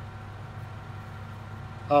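A steady low hum in the background with no sudden sounds; a man's voice begins right at the end.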